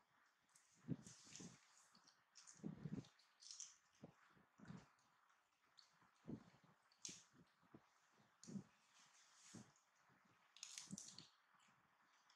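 Faint, irregular crunching and crinkling of raw cabbage leaves as a baby macaque bites, chews and handles them.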